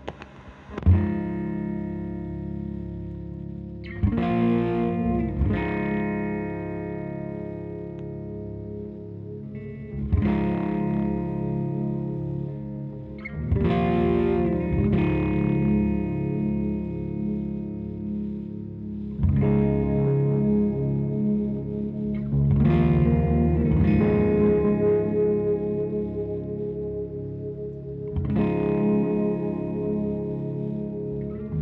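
Live rock band music. A loud full-band passage with crashing cymbals cuts off at the very start. Then an electric guitar run through effects pedals plays slow, sustained chords, a new one struck every few seconds, over low bass notes with no drums.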